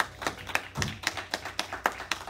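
Congregation clapping their hands in answer to a call to clap: distinct, uneven claps, several a second.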